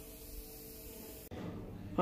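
Quiet background hiss with no distinct event; the background changes abruptly a little over a second in, where the recording jumps.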